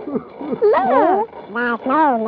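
Excited voices overlapping without clear words, the pitch of two voices sliding up and down across each other, then one voice held near the end.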